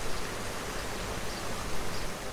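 Steady splashing of water from a fountain's jets.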